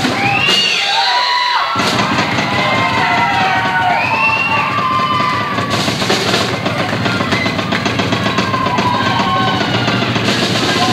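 Drum solo on a large drum kit: continuous dense playing across drums and cymbals, with the bass drum dropping out for about a second near the start.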